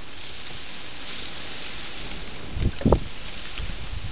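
Steady hiss of a trail camera's microphone, with a few low rumbles of wind buffeting the microphone about two and a half to three seconds in.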